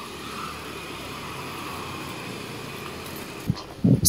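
Steady rolling noise of a bicycle being ridden on a paved road: tyre and wind noise on the microphone, with a couple of short knocks near the end.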